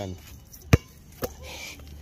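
A basketball bouncing on an outdoor hard court: one loud bounce just under a second in, and a lighter one about half a second later.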